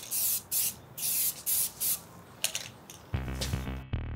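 Aerosol can of Rust-Oleum High Performance Enamel spraying in several short hissing bursts. Music with a heavy beat comes in about three seconds in.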